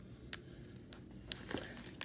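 Faint handling of a foil trading-card pack wrapper: a few scattered sharp crinkles.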